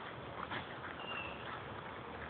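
Faint outdoor sound of a herd of Saanen goats moving about on grass, with a brief high chirp about a second in.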